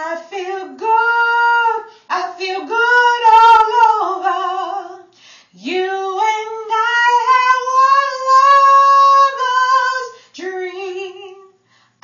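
A woman singing an R&B song solo, in phrases broken by short breaths. About halfway through she holds one long note for roughly four seconds.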